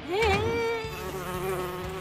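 A cartoon zombie girl's voice making one long, strained, wordless moan as she forces a smile. It rises briefly at the start, then holds on one wavering pitch.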